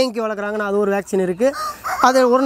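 A rooster crowing: one long, level-pitched crow that ends about a second in, followed by shorter calls.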